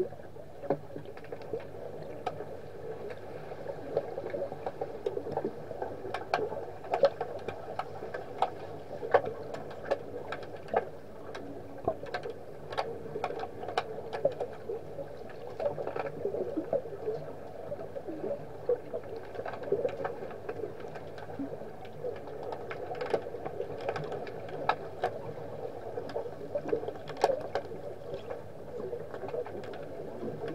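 Underwater hockey heard through an underwater camera: a steady, muffled underwater rush with frequent, irregular sharp clicks and knocks from the play on the pool floor.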